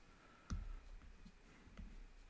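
A few faint clicks from a stylus tapping a drawing tablet: one sharper click about half a second in, then softer ones around one second and near the end.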